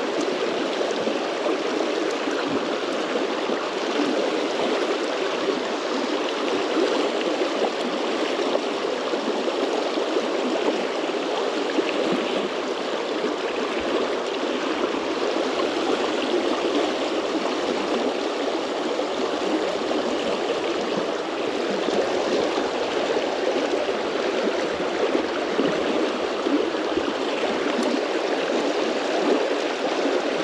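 Fast, shallow river water running over a stony riffle: a steady, even rushing close by.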